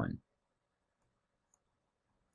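Quiet room with a few faint, sparse clicks while numbers are being handwritten on screen.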